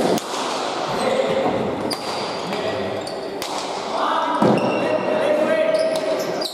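Basque pelota ball cracking off the walls and players' hands in an echoing trinquet court, about once a second, over a steady murmur of spectators' voices.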